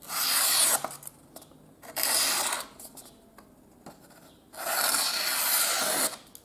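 Blade of a Gocomma folding knife slicing through a sheet of paper in three strokes, each a short scraping hiss, the last one the longest. It is an edge test, and the blade cuts cleanly: sharp out of the box.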